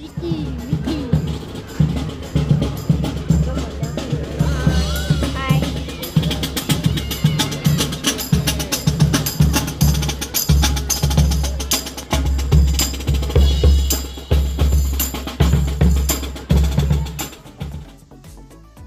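Marching band playing in the open: bass drums and snare drums beat a steady march rhythm under sousaphones and other brass.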